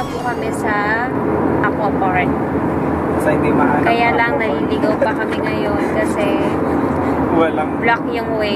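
Steady road and engine noise inside a car cruising on a highway, with people's voices talking over it now and then.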